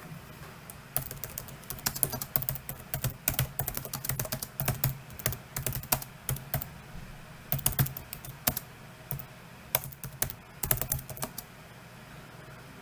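Typing on a computer keyboard: quick runs of key clicks starting about a second in, with a short pause around the middle, as a comment is typed out.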